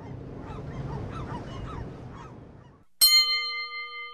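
Faint background ambience with distant voices fading out, then a single bell-like chime struck about three seconds in, its several clear tones ringing on as it slowly dies away.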